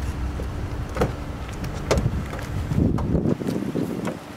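Driver's door of a 2010 Mazda 6 sedan being opened: sharp latch clicks about a second in and again just before two seconds, then a short stretch of rustling handling noise, over a steady low outdoor rumble.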